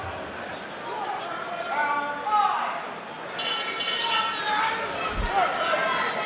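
Indistinct shouting voices in a large arena hall, with a dull thump about five seconds in.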